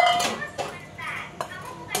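Voices in a small room, with a couple of sharp clinks of a utensil against ceramic bowls near the end as food is dished out.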